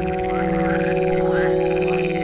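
Ambient soundtrack: a steady low drone under short rising chirping calls every half second or so and a fast pulsing trill above them, with frog-like croaks in the mix.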